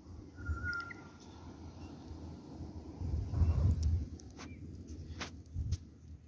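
Outdoor ambience: a few short bird chirps early on over a low rumble on the microphone, with several sharp clicks in the second half.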